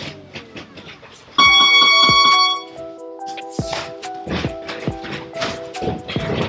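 Electronic boxing round timer sounding one steady beep for about a second, over background music. Scattered thuds of gloves and footwork follow as sparring begins.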